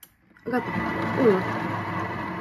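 Thermomix food processor's motor starting about half a second in and running at low stirring speed, a steady whir with a thin whine in it. A voice speaks over it.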